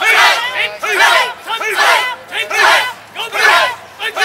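Karate students shouting in unison as they drill basic techniques together, about five loud group shouts in a steady rhythm, a little under a second apart.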